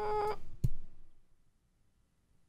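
A single short knock about two-thirds of a second in, after a faint fading sound; then near silence.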